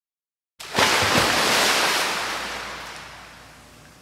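A splash sound effect: something plunges into water with a sudden loud splash about half a second in, then the churning water slowly fades away.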